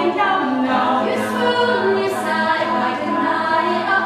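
Mixed-voice a cappella group singing in harmony, voices only with no instruments, the chords held and moving steadily.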